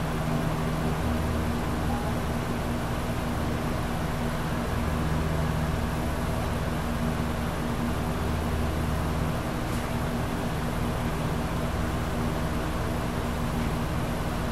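A steady low mechanical hum with an even hiss over it, with no speech.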